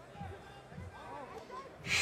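Faint, low-level speech in the background, likely the fight broadcast playing quietly, with a short hiss near the end.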